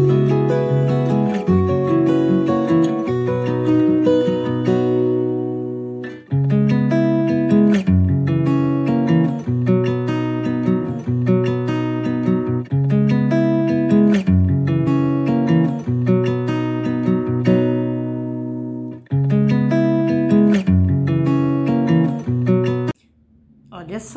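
Background music: a plucked acoustic guitar tune in short repeated phrases, cutting off suddenly about a second before the end.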